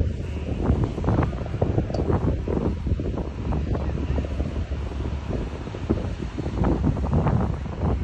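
Wind noise on the microphone: a continuous low rumble with rapid, irregular buffeting.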